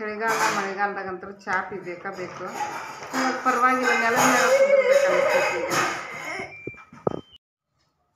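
A woman talking, in an untranscribed stretch of speech; the sound cuts off suddenly about seven seconds in.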